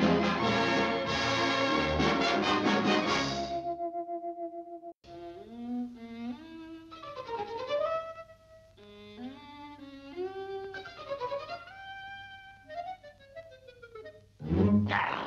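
Orchestral cartoon music. The loud title music ends about four seconds in on a held note. Then a quieter melody of sliding, wavering violin notes plays.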